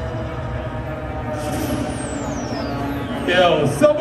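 Electronic bass music over a club sound system in a breakdown: the heavy bass drops out, held synth tones carry on, and a high sweep falls in pitch. A voice comes in near the end.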